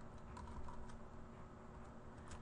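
Computer keyboard being typed on: a handful of faint, quick key clicks as a word is keyed in.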